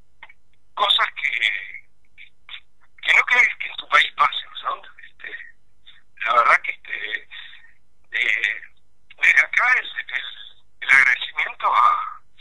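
Speech only: a voice talking over a telephone line, narrow and band-limited, in short phrases with brief pauses.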